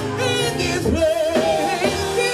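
A women's gospel praise team singing together into microphones, with instrumental band backing.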